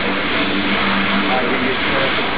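Airbrush blowing a steady, loud hiss of air as it sprays paint onto fabric.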